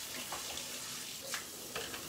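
Steady sizzling hiss of burgers cooking on an electric contact grill, with a couple of faint clicks.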